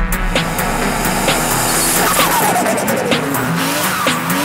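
A Toyota Chaser drift car driving by, its pitch falling steadily for about a second midway, mixed with background music.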